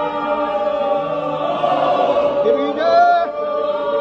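A group of voices chanting together in unison, holding long drawn-out notes, with a brief rise in pitch about three seconds in.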